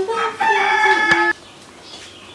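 A rooster crowing once: a cock-a-doodle-doo of several stepped notes that cuts off abruptly about a second and a third in.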